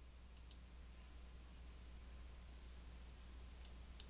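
Near silence with a faint low hum, broken by short computer mouse clicks: a quick pair about half a second in, and two more near the end.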